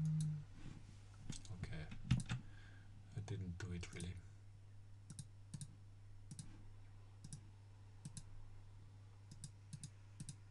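Computer mouse clicking: separate sharp clicks, about one or two a second, through the second half, over a steady low electrical hum. There is low mumbling in the first few seconds.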